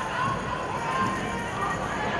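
Players' voices calling out across a football pitch during open play, faint and at a distance over a steady outdoor background.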